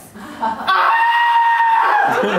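A person imitating a rooster's crow: a few short syllables, then one long held final note.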